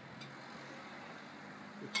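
Faint, steady outdoor background noise, a low even hum like distant traffic, with a spoken word starting near the end.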